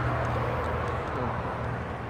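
Steady low mechanical hum with an even background drone, holding level throughout.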